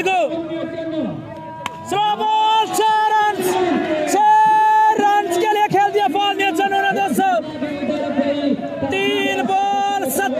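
Excited male cricket commentary, with crowd noise behind it; about four seconds in, one long held shout.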